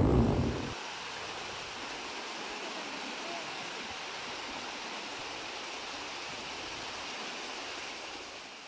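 Water rushing steadily over rocks in a small waterfall, after a brief low rumble in the first second; it begins to fade at the very end.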